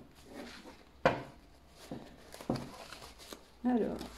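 A few light knocks and clicks of objects being handled on a tabletop, with two sharper clicks about a second in and about two and a half seconds in.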